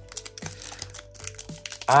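Soft crinkling and clicking of a torn foil Pokémon booster-pack wrapper being handled as the cards are pulled out, over faint background music with a couple of held tones.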